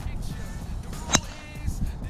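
A golf driver striking a teed ball: one sharp crack a little past a second in. Background music plays throughout.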